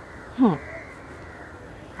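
Crows cawing faintly in the background, with a woman's short, falling "hm" about half a second in.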